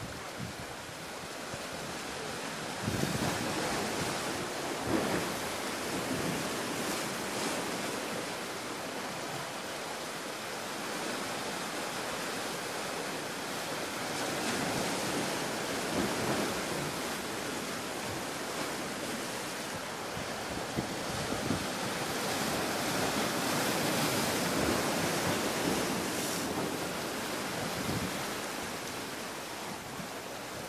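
Sea surf washing against a rocky shore, a steady rush that swells and eases, with some wind buffeting the microphone.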